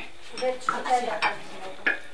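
Handling noise: a plastic-wrapped bundle rustles and a few sharp clicks or clinks sound, the last one near the end, with women's voices faintly underneath.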